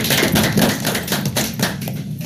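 A small roomful of people clapping, a dense patter of separate claps that stops just before the end.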